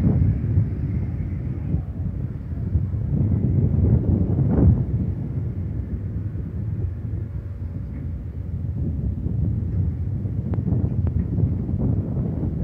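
Wind buffeting the microphone over a low, steady rumble from a boat at sea, with one brief louder rush about four and a half seconds in.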